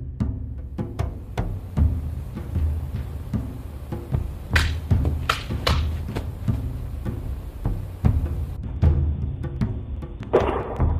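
Percussive background music with a steady, deep drum beat. Just before the middle, three sharp hits cut through it in quick succession.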